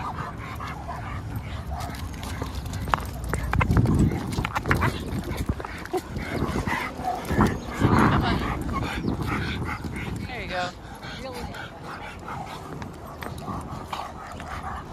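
Two leashed dogs playing, with scuffling and a couple of short, high whines about ten and a half seconds in.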